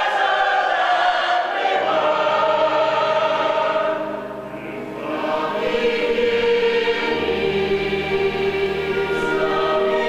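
Large mixed choir of the musical's cast singing long held chords. The sound dips briefly just before the middle and swells again.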